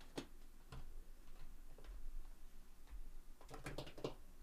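A few light, sharp clicks and taps, with a quick cluster of them near the end.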